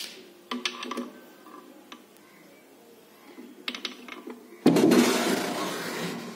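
A few light clicks and knocks, then near the end a sudden loud scraping rumble lasting over a second as the almirah's drawer is slid shut.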